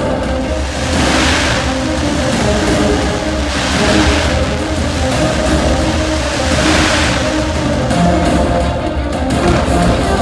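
Fireworks show music playing loudly, with three rushing, hissing swells from the fireworks about a second, four and seven seconds in.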